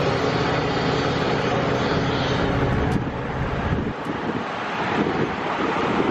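A large engine running at a steady pitch under a rushing noise. Its low hum drops away about four seconds in.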